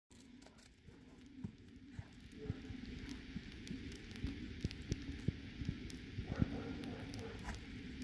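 Faint, irregular crunching footsteps in fresh snow, about two to three a second, over a faint steady low hum.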